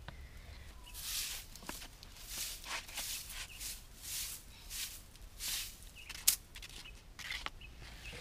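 A short hand broom of dry grass swishing across bare packed earth in quick repeated strokes, about two a second, with a single sharp tap about six seconds in.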